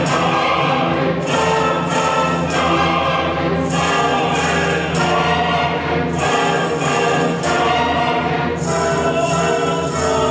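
Symphony orchestra with choir performing a loud, full passage, with strong accented chords a little over a second apart.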